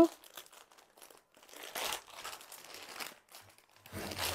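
Clear plastic packet crinkling as a packaged cotton suit is opened and the cloth drawn out, in short rustles from about a second and a half in.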